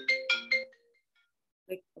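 Short electronic chime, a quick run of four or five bright notes like a ringtone or notification, dying away within the first second.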